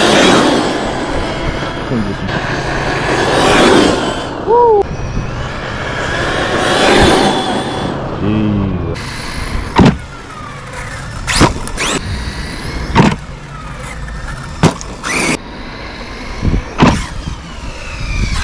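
Tekno MT410 electric RC monster truck driving hard on dirt, its brushless motor whining and revving up and down in sweeps. From about nine seconds in come a string of sharp knocks as the truck lands and hits the ground off jumps.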